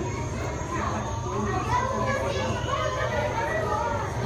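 Background chatter of visitors, children's voices among them, over a steady low hum.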